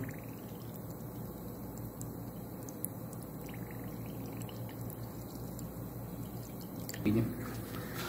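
Water and trapped air being flushed out of a thin hose end held under water in a pot, a faint steady bubbling and trickling as the excess air is purged from the line.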